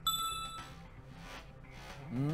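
Game-show letter-reveal chime: a single bright ding right at the start, ringing for about half a second and fading, as a chosen letter lights up on the puzzle board.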